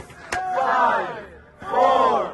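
A crowd shouting a New Year's countdown in unison, one number about every second: "five" and then "four". A short sharp click comes about a third of a second in.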